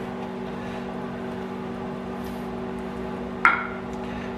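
Microwave oven running with a steady hum. A brief sharp sound comes about three and a half seconds in.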